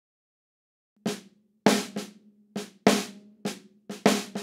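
Snare drum hits from a soloed snare track played through the Drumagog 5 drum-replacement plugin, starting about a second in: about seven sharp strikes, some loud and some softer, each ringing on. Some of them are false triggers set off by kick drum bleed into the snare track.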